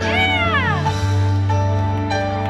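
Live rock band music played loud over a concert PA, with sustained chords and a steady bass. In the first second a high, wavering pitched tone rises slightly and then slides steeply down.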